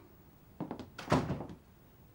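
A room door being closed: a couple of light clicks about half a second in, then a dull thunk just after a second as it shuts.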